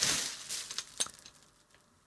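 Bubble-wrap packaging rustling as the tripod's pan arm is unwrapped, fading out within the first second, with a single small click about a second in.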